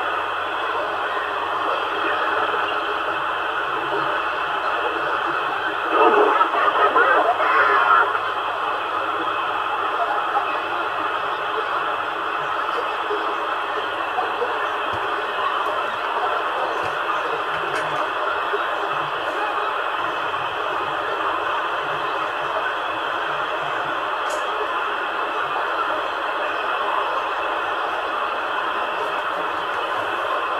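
CRT 7900 CB radio receiving on AM at 27.225 MHz: steady, band-limited hiss of the open channel with weak distant voices buried in it, and a louder two-second burst of a station breaking through about six seconds in.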